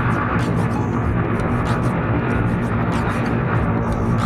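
Small motorcycle engine running steadily at cruising speed, with road and wind noise, on an aftermarket UMA spark plug and ignition coil that the rider says have reduced engine vibration.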